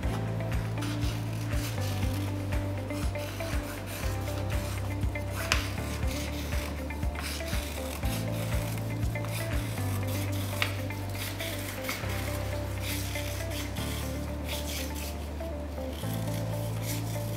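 Scissors snipping and cutting through thin paper in repeated short strokes, over background music with steady low notes that change every couple of seconds.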